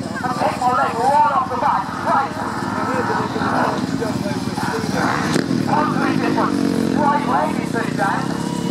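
Motocross bike engine running and revving through a jump and the ride away, with the pitch rising and falling near the end. A man's voice talks over it throughout.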